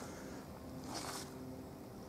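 Quiet outdoor background with a faint steady hum and a brief rustle about a second in.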